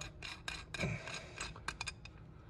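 Light metal clicks and rubbing of a small socket being turned by hand on the threaded plug of an aluminium VVT solenoid housing, with a quick run of about three clicks near the end.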